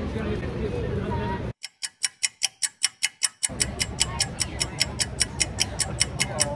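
Clock-style ticking laid over the scene, rapid and even at about five ticks a second, starting about one and a half seconds in. For its first two seconds nothing else is heard, then the outdoor background noise returns beneath the ticking.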